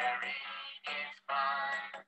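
Nursery-rhyme song from a cartoon video: bright sung vocals over backing music, in short phrases with brief breaks between them.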